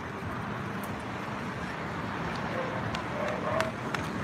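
Steady outdoor city noise: a constant hum of traffic, with faint distant voices near the end.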